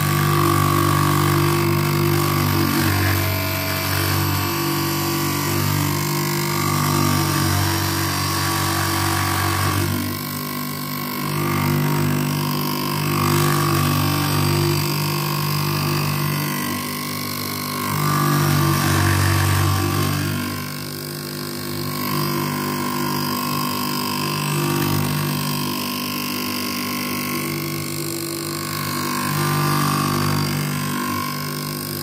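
Semi-automatic optical lens edger running, its grinding wheel shaping an eyeglass lens clamped between the spindles: a steady motor hum with grinding noise that rises and falls in loudness a few times.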